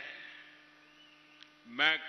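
Faint steady hum from a public-address system during a pause in amplified speech. The echo of the last words fades over the first half second, and the man's voice comes back in near the end.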